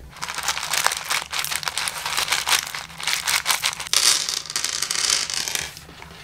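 Plastic bag of plastic pearl beads crinkling as it is handled and shaken, with the beads rattling in many small clicks as they are poured out onto the table; loudest about four seconds in.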